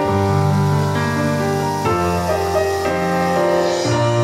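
Slow instrumental music led by held keyboard chords that change about every two seconds, with no drum hits.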